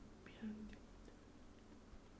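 Near silence: room tone, with a brief faint murmur of a voice about half a second in.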